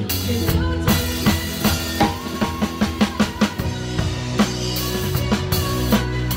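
A drum kit played along with a recorded song: bass drum, snare and cymbals over the song's sustained music. There is a quick, even run of drum hits about two to three seconds in.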